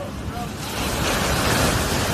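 An ocean wave breaking against shoreline rocks: a loud rush of surf that swells about half a second in and stays loud.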